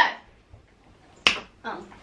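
A single sharp click about a second in, as a hand strikes the cardboard prize wheel to spin it.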